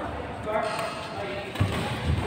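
Echoing badminton hall: players' voices mixed with the knocks of rackets, shuttlecocks and shoes on the court floor, with a sharper thump near the end.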